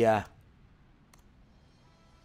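A man's voice trailing off a drawn-out syllable at the start, then near silence with one faint click about a second in and faint steady tones near the end.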